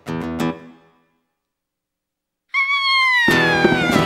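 A strummed acoustic guitar chord rings and dies away, followed by about a second and a half of silence. Then a long, loud, high-pitched scream begins, slowly falling in pitch, and loud guitar music crashes in under it.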